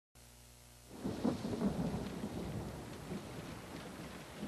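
A rumble of thunder that breaks in about a second in and slowly rolls away, over steady rain.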